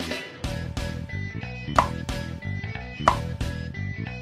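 Background music playing steadily, with two sharp clicks, about two and three seconds in.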